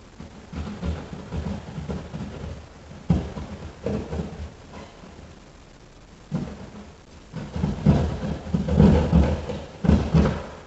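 Hand drywall saw cutting into drywall in short, irregular strokes, each giving a dull thud through the wall panel, with a brief pause about halfway through.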